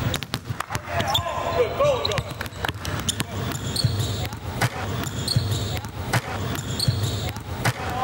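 A basketball being dribbled on a hardwood court, with repeated sharp bounces echoing in a large, mostly empty arena, and short squeaks a second or two in.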